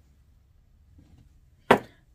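A small glass jar set down on a countertop: one sharp knock about a second and a half in.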